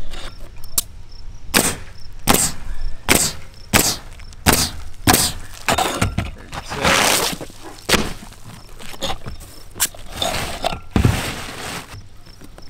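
Pneumatic roofing nail gun driving nails through asphalt shingles: a series of sharp shots, roughly one a second, with a longer rustling stretch about seven seconds in as a shingle is moved into place.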